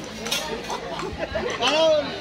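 People chatting, with one loud, drawn-out voice call near the end whose pitch rises and then falls.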